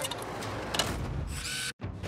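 Metal clicking and ratcheting of a steel wheel boot being clamped onto a car wheel. The sound cuts off suddenly near the end.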